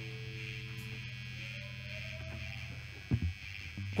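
Stage amplifiers humming and buzzing during a pause in a live punk rock song, with a faint held note slowly rising in pitch through the middle and a few low thumps about three seconds in.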